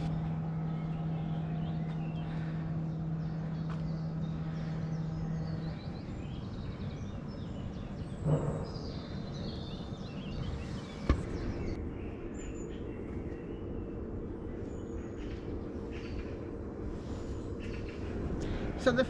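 Wild birds chirping over a steady low hum, with a single sharp click about two-thirds of the way through.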